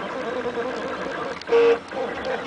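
RepRap 3D printer's stepper motors running as the print head moves over ABS parts, a tone whose pitch wavers and loops with each move. About one and a half seconds in, a louder steady tone sounds for a quarter second.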